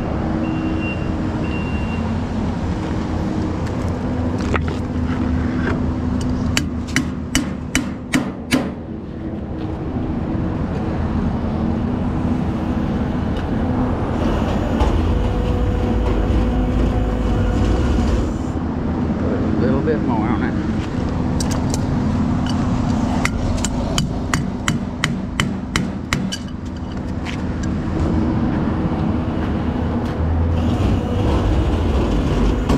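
Rollback tow truck's engine running steadily to power the winch while a broken-wheeled trailer is pulled up the tilted deck. Two runs of sharp metallic knocks, about two a second, come a few seconds in and again past the middle.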